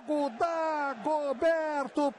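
Speech only: a man's voice, a television football commentator talking excitedly over a goal.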